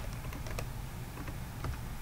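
Typing on a computer keyboard: several quick, irregularly spaced keystrokes.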